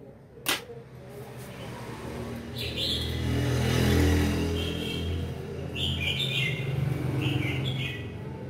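A switch clicks once, then recorded bird calls come through horn speakers driven by a small bird-trapping amplifier: three short runs of chirps over a low hum.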